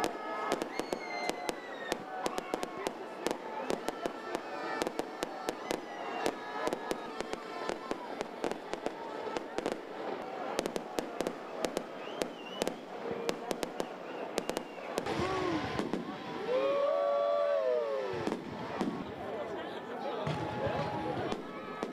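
Fireworks display going off: a rapid run of sharp cracks and pops over crowd noise, with a louder stretch of gliding tones near the end.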